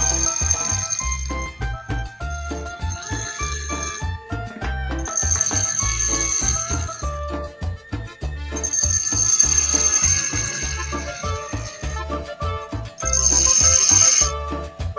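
Background music with a steady beat, over a high hiss from the steel centre spur of a Forstner bit being ground against a drill-driven sharpening stone, coming and going in several bouts as the bit is pressed on and lifted off.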